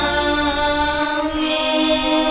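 Slow devotional church music of long, held notes over a low bass, accompanying the elevation of the host and chalice at Mass.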